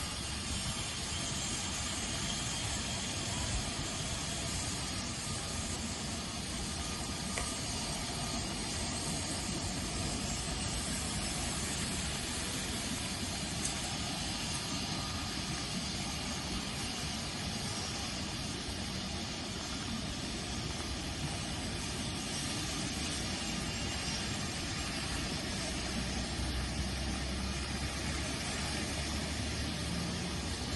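Steady, even hiss of background noise, unchanging throughout, with no distinct events.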